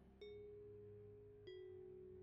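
Faint background music: a low held drone with two soft chime notes, one just after the start and one about a second and a half in.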